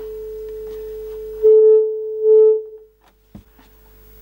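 A steady test tone from the pattern generator's signal, played through the small Philips KA 920 portable TV's loudspeaker. It swells louder and slightly harsh twice about halfway through, then fades away. A single click follows, as the pattern generator's control is switched.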